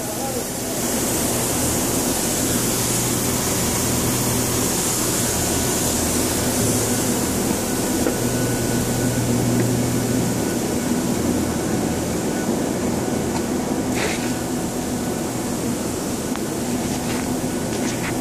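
Steady drone of steel fabrication shop machinery, with a low hum and a high hiss. One brief knock comes about three-quarters of the way through.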